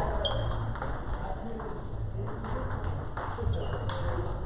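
Table tennis balls clicking off paddles and bouncing on tables, many quick sharp clicks from several rallies at once in a large hall, with two brief high chirps and voices murmuring in the background.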